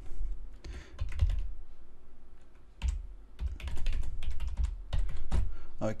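Typing on a computer keyboard: a short run of keystrokes, a pause of about a second and a half, then a longer, quicker run.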